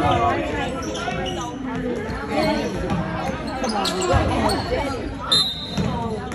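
Basketball game sounds in a gymnasium: a ball bouncing on the hardwood court, with players' and spectators' voices echoing in the hall.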